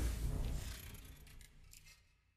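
Title-sequence sound effect: a bass-heavy whoosh that fades away, with a scatter of crisp high ticks in its tail.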